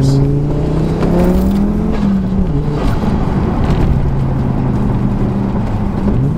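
Audi urS4's turbocharged 2.2-litre five-cylinder (AAN block, Garrett GT3071R turbo, 3-inch exhaust) under acceleration, heard from inside the cabin. The revs climb for about two seconds, fall back, then hold steadier.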